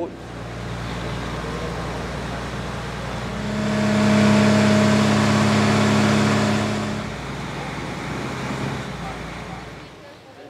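Boat engine running at a steady drone over rushing water and wind. The drone grows louder about three and a half seconds in and drops back around seven seconds.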